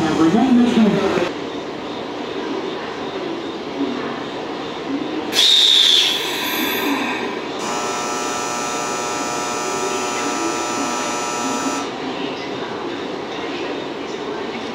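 Railway station platform beside a standing 383 series electric train: a short loud burst of hissing about five seconds in, then a steady electronic departure bell ringing for about four seconds before cutting off.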